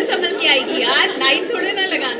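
Speech: several voices talking over one another.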